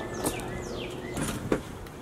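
A bird calling in short falling chirps, with a single sharp click about one and a half seconds in.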